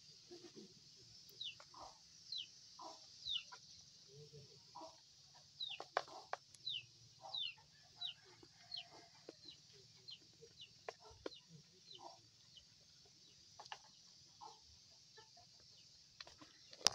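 Faint bird calls: a run of short, high, downward-sliding chirps about two a second, mixed with lower short calls and a few sharp clicks.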